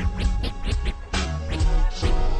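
DJ turntable scratching over a slowed-down, screwed West Coast hip hop beat with heavy bass, the music dipping briefly about a second in.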